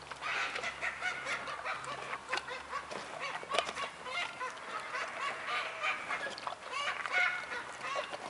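A flock of birds calling: many short, overlapping calls throughout, with scattered sharp clicks.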